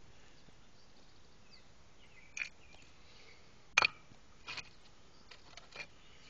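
A few short knocks and scrapes as clay drain tile pieces are handled at the pipe joint, the loudest about four seconds in, over a quiet background with faint bird chirps.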